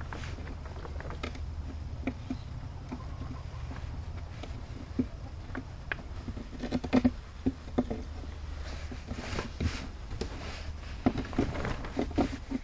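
Scattered light clicks, scrapes and knocks of hands pressing a rubber grommet into a freshly drilled hole in a plastic bucket, over a low steady rumble. The grommet will not seat because the rough edge left by drilling gets in its way.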